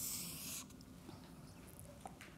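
Felt-tip marker drawing a long stroke on a large paper pad, a steady hiss that stops about half a second in, then faint room tone.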